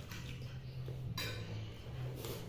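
Metal forks scraping and clinking on plastic plates while noodles are eaten, with a sharper clatter a little over a second in, over a steady low hum.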